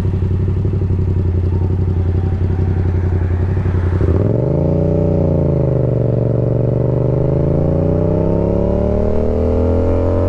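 Yamaha MT-07's parallel-twin engine through an M4 full exhaust, running steadily at low revs at first. About four seconds in it revs up sharply, dips back, then climbs steadily in pitch as the bike accelerates.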